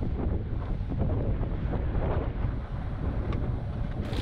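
Steady wind buffeting the microphone on the deck of a sailing yacht under way, with water washing along the hull beneath it.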